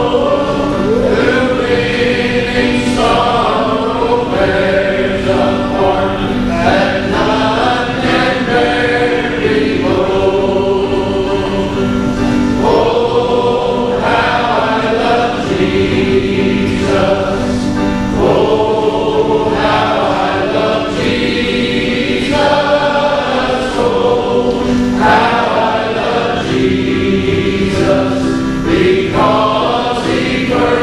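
A small group of men singing a gospel hymn together, with steady held low notes under the changing melody.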